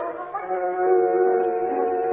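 Operatic singing with orchestra in an old live recording: a voice holds one long note starting about half a second in, with the light crackle of the old recording.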